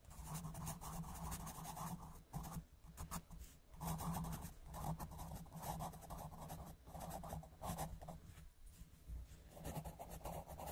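Pencil scribbling on paper in a run of scratchy strokes, each from under a second to about two seconds long, with short pauses between them.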